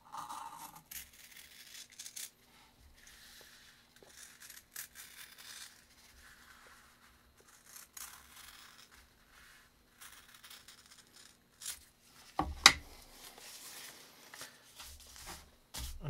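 Scissors cutting through thin fabric folded four layers thick, in a run of short separate snips with rustling of the cloth between them. Near the end come a couple of sharper, louder knocks.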